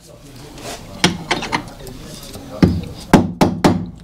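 Hammer taps driving a ball bearing by its outer ring into a heated Simson two-stroke engine crankcase. A handful of sharp knocks come at uneven spacing, the heaviest in the last second and a half.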